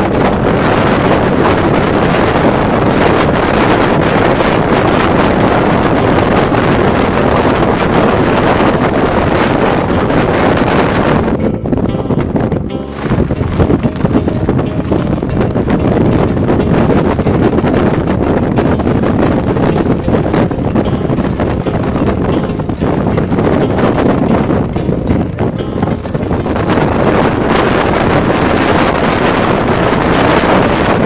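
Strong wind blowing across the microphone: a steady, loud roar that eases briefly about twelve seconds in and again near twenty-five seconds.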